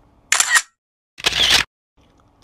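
Two short hissing bursts of an edited-in sound effect, about a second apart. The first is thin and high, the second fuller and slightly longer, with dead silence between them.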